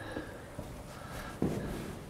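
Faint footsteps and shuffling on a stone floor, with one sharper step about one and a half seconds in.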